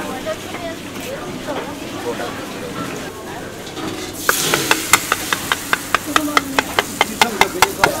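Oil sizzling as pastries fry in a wok, under background chatter. About halfway through, a run of sharp metal clinks starts, about four a second: a metal ladle striking a flat, round batter mould as batter is scooped and spread.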